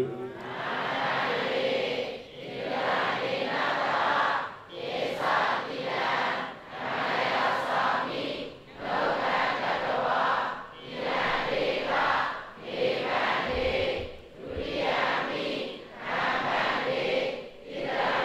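Many voices chanting together in unison, a congregation reciting in short even phrases of about a second and a half, each followed by a brief pause.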